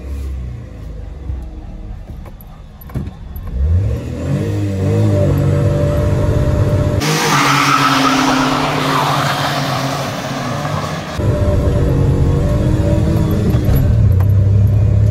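Maruti Suzuki Wagon R engine heard from inside the closed cabin: idling, then revving up about three seconds in as the car launches in a drag race, and holding high revs as it accelerates. In the middle a louder, hissier stretch of engine, tyre and wind noise is heard from outside alongside the two racing Wagon Rs, before the in-cabin engine note returns near the end.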